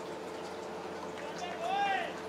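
Steady open-air background noise with a constant hum. Near the end comes a single drawn-out shout, rising then falling in pitch, from a voice out on the field.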